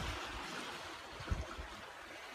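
Soft, steady outdoor background hiss with a few faint low thumps.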